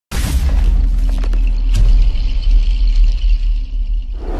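Cinematic intro sound design: a deep, sustained rumbling boom with sharp glitchy clicks and crackles over it in the first two seconds, thinning out near the end.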